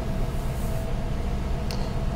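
Car engine idling at about 900 rpm, heard from inside the cabin as a steady low rumble.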